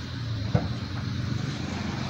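A motor engine running steadily with a low hum, and a single sharp click about half a second in.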